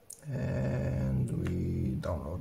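A man's low, rough, drawn-out vocal groan held for nearly two seconds, starting a moment in.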